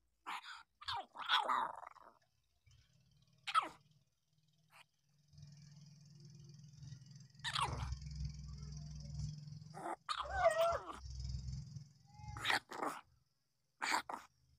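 Week-old puppies whimpering and squeaking in short, scattered cries. A steady low hum runs underneath from about five seconds in.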